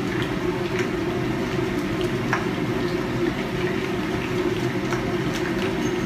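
Steady rushing of a commercial kitchen's exhaust hood fan, with a few faint clicks as flour and water are mixed into a slurry.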